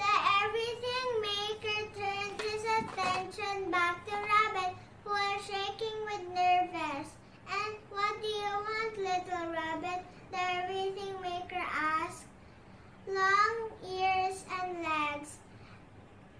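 A young girl's voice speaking in a sing-song way, phrase after phrase with short pauses between.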